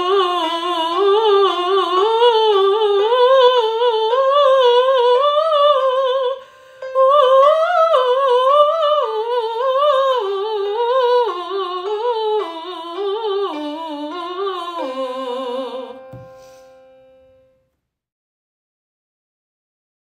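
A woman singing a bel canto vocalise of legato triplet runs with the middle note of each triplet accented, climbing steadily in pitch for about six seconds. After a quick breath she sings a descending run and ends on a held low note that fades out.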